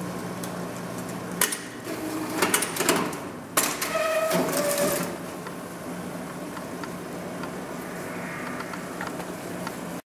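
Polychem PC102 semi-automatic plastic strapping machine running a strapping cycle on the strap around a block: a run of sharp clicks and clunks between about one and a half and three and a half seconds in, then a brief motor whine, all over a steady low hum.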